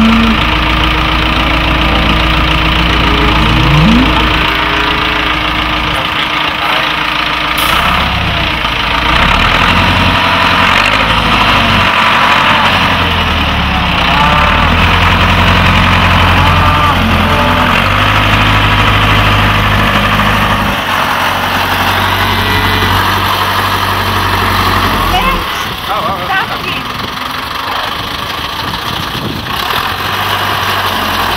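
Tractor engine running close by, its speed stepping up and down repeatedly as the front loader is worked.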